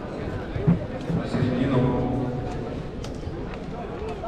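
Indistinct talking of people around the mat in a large, echoing sports hall, with one brief thump a little under a second in.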